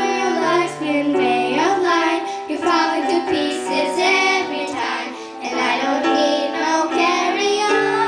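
A group of children singing a pop song together, accompanied by an electronic keyboard.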